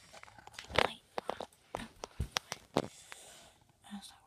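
A scattered run of light clicks and knocks, several a second between about one and three seconds in, from objects being handled close to the camera microphone.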